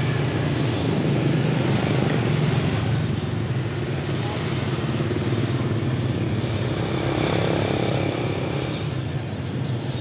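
Motorbike street traffic: several small scooter and motorcycle engines running as they pass along the road, in a steady, continuous din.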